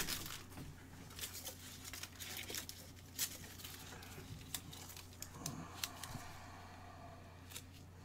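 Faint rustling, crinkling and small clicks of trading cards and packaging being handled with gloved hands, over a steady low hum.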